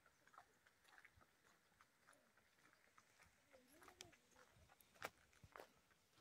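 Near silence, with a few faint scattered clicks; the most distinct comes about five seconds in.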